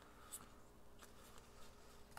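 Faint scrapes of Garbage Pail Kids trading cards sliding against one another as a stack is flipped through by hand, a few short soft strokes.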